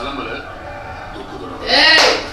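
Film dialogue playing quietly from a laptop, then about three-quarters of the way through a man bursts into loud laughter.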